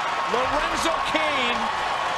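A man's voice talking over steady ballpark crowd noise, as heard on a baseball telecast.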